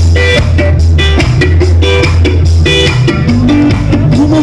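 Live ska band playing: electric guitar chords repeating in short stabs over bass and drums, with no singing yet. The sound is loud and bass-heavy, recorded right next to the PA speakers.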